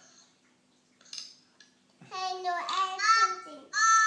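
A young child's high-pitched wordless vocalising: about halfway through, a run of loud squealing sounds with wavering pitch begins and carries on to the end.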